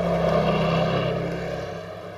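A steady engine-like hum that holds one low tone and fades in the second half.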